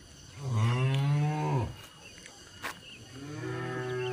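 Young Limousin-type cattle mooing twice: a loud call of about a second and a half, then a quieter, longer call starting near the three-second mark.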